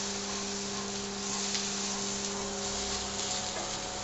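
Chopped onions sizzling as they fry in a little oil in a nonstick pan, stirred with a metal spoon, with a steady low hum underneath that fades near the end.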